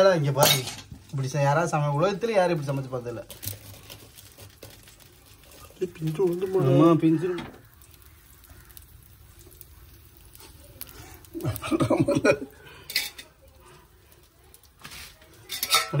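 A metal spatula and steel dishes clinking against a flat iron frying pan (tawa), with a few sharp clinks in the second half.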